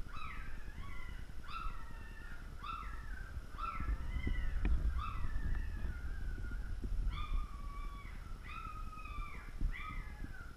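One-week-old yellow Labrador puppy crying in repeated short high squeals, about one a second, each jumping up in pitch and then sliding down. A low rumble swells under the cries around the middle.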